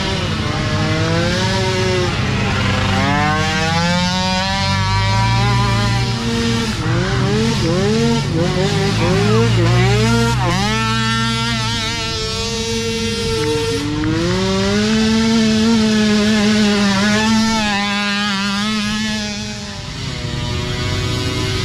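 Several small racing ATV engines revving up and down as the quads pass, their pitch climbing and falling again and again with overlapping engines.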